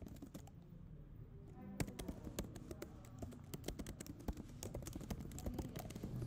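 Typing on a computer keyboard: a steady run of irregular key clicks.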